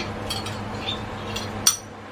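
Several light clinks of a small glass bowl knocking against a stainless steel soup pot as ingredients are tipped and picked out of it, the sharpest a little before the end, over a steady low hum.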